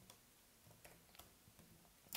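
Near silence with several faint, irregularly spaced key clicks from typing on a computer keyboard.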